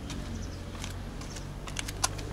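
Light footsteps on asphalt, heard as a few soft clicks, over a steady low background rumble.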